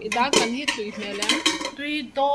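Dishes and cutlery clinking several times, mixed with people's voices.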